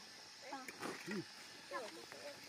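Faint, scattered snatches of people's voices in conversation, over a steady high-pitched insect drone.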